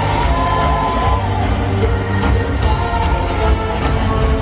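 Live pop band and singer playing over an arena sound system, heard from the stands with a steady beat and held sung or synth notes, and crowd noise mixed in.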